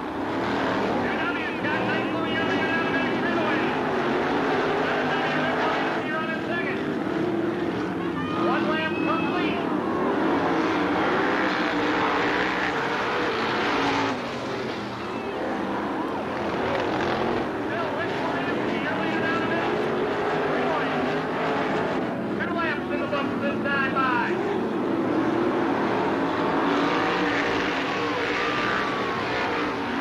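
A pack of winged sprint cars with V8 engines racing on a dirt oval. The engine pitch rises and falls as the cars go on and off the throttle through the turns. The sound is continuous and briefly quieter about halfway through as the pack passes the far side.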